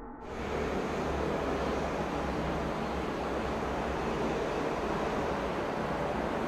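A steady, even hiss of background noise, typical of a low-quality impromptu recording. It starts a fraction of a second in and holds at one level throughout.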